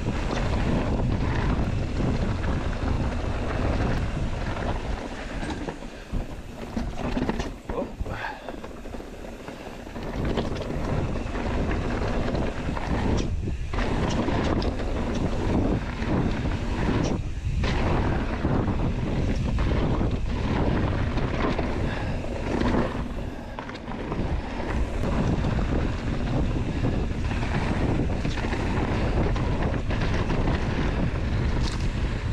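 Wind buffeting the microphone as a mountain bike rolls fast over rough rock, with many sharp knocks and rattles from the tyres and bike. A quieter stretch comes from about five to ten seconds in.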